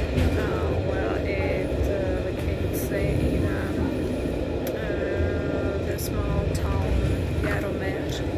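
Steady low rumble of a passenger train running, heard from inside the carriage, with a person's voice talking over it.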